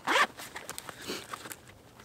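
A zipper on an Evoc Capture One 7L camera hip pack is pulled open in one quick stroke at the start. Faint rustling of the bag's fabric follows.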